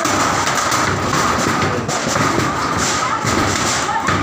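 Voices of several people talking and calling over a loud, steady rushing noise, with irregular knocks and thumps mixed in.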